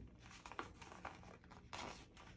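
A sheet of paper rustling and crinkling as it is handled and folded by hand, with a louder rustle near the end.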